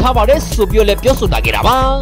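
Hip-hop music with rapped vocals over a steady bass line.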